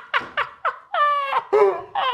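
Two men laughing helplessly: quick rhythmic bursts of laughter, about four a second, then a long high-pitched squealing laugh from about a second in.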